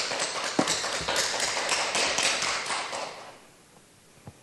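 Audience applauding, a dense patter of many hands that dies away about three seconds in.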